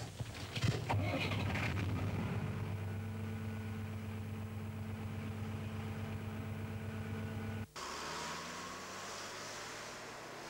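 Massey Ferguson 2000-series tractor's Perkins diesel engine started on the key: a few clicks and a brief crank as it catches, then it settles into a steady idle. It cuts off abruptly about three-quarters of the way through, giving way to a quieter rushing noise.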